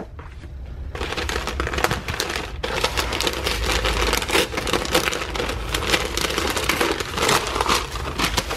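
Brown kraft packing paper being pulled open and crumpled by hand, a dense continuous crackling that starts about a second in.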